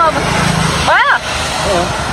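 Steady rush of wind and road noise from riding a motorbike on a wet road, with a brief rising-and-falling vocal exclamation about a second in.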